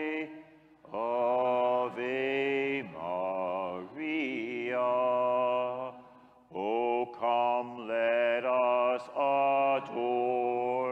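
A slow devotional hymn sung in a chant style: long held notes of about a second each, stepping in pitch, in phrases broken by short pauses.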